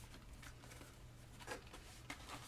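Very faint handling of a cardboard trading-card box being opened by hand, with a soft tap about one and a half seconds in, over a low steady hum.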